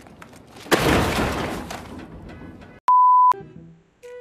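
A shoulder-mounted TV camera smashing on the ground: a loud crash that breaks into clattering and fades over about two seconds. Near the end a single steady high censor bleep sounds for about half a second.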